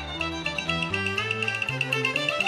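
Cantonese opera accompaniment band playing an instrumental passage between sung lines, a quick run of short notes with a high note repeated several times a second.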